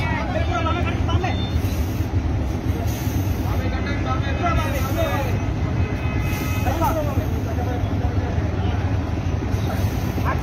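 Diesel engine of a Hyundai Universe coach bus running with a steady low rumble as the bus creeps slowly forward, with voices calling out over it now and then.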